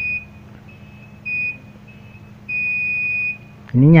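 Multimeter continuity buzzer beeping on and off as the probes touch across a capacitor on a phone circuit board: a brief beep, another about a second later, then a longer beep lasting most of a second. The beep, which the technician calls shrill ("nyaring"), signals low resistance across the part, which he suspects is a short-circuited capacitor.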